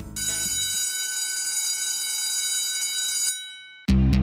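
A high, steady ringing tone made of several pure pitches, holding for about three seconds and then fading away as the guitar music stops. Loud music with a heavy bass cuts in suddenly near the end.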